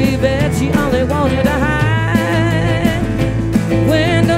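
Live rock/soul band playing a song: a wavering lead melody with vibrato over a steady bass line, guitar and regular drum hits.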